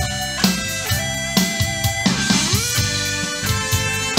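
Live band playing an instrumental introduction to a romantic ballad: drum kit keeping a steady beat under guitar and other sustained instruments, with one note sliding upward a little past halfway.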